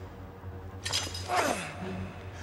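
Iron wall chains rattling and clanking as a chained man yanks against them, starting a little under a second in. A strained grunt falling in pitch follows, all over low background music.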